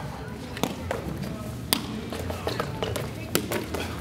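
Footbag rally over a net: a few sharp, irregularly spaced taps of feet striking the bag.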